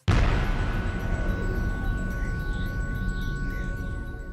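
Channel intro logo music: a sudden booming hit at the start, then a sustained electronic chord with two steady high tones that slowly fades.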